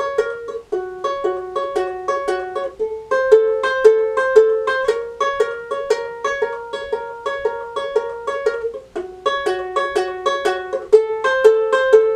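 Ukulele fingerpicked, thumb and middle finger alternating between the second and first strings, an even run of plucked notes about four a second. The two-note shape moves to a new fret position every few seconds.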